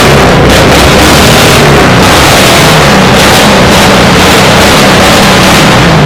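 Exhaust of a classic Holden sedan with its engine revved, heard at close range from the tailpipe. It is loud enough to overload the recording into distortion.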